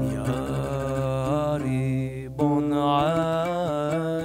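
A man singing a traditional Syrian Sephardic piyut (Hebrew liturgical hymn) in long, ornamented melismatic phrases, with oud notes ringing underneath. Two phrases, with a short break a little past the middle.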